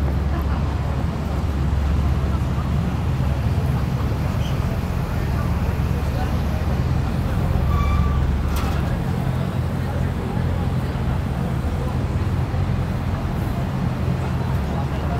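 City street ambience: a steady rumble of road traffic with the indistinct voices of passers-by. A brief click comes about eight seconds in.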